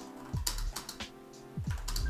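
Typing on a computer keyboard: two short runs of keystrokes, over steady background music.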